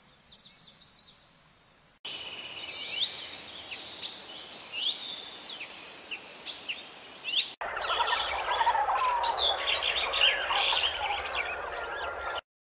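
Birds calling and chirping in three separately edited stretches: faint high chirps at first, then loud short whistles and chirps from about two seconds in, and after an abrupt cut about seven and a half seconds in, a denser chorus of lower, overlapping calls.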